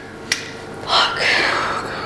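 A single sharp click, then a long breathy sigh about a second in that fades away: a dejected sigh of dismay.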